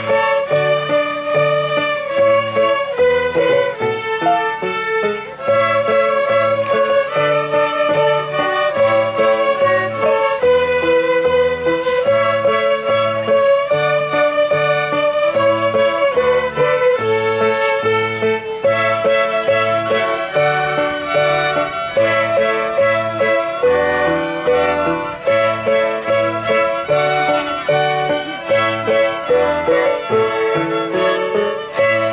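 A group of young fiddlers playing a tune together on violins, a melody of held and moving notes over a steady beat of low notes.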